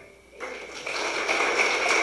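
A handbell chord dies away, and after a brief near-quiet a congregation starts applauding, with a steady high tone held underneath the clapping.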